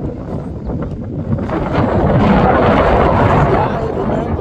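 Wind buffeting the microphone in a low rumble, getting louder in a gust through the middle.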